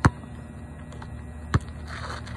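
A basketball bouncing twice on an outdoor asphalt court, two sharp thuds about a second and a half apart, the first the louder.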